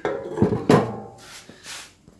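Sheet-steel transmission tunnel panel being turned over on a steel bench: several sudden knocks and scrapes of metal on metal, the loudest about two-thirds of a second in.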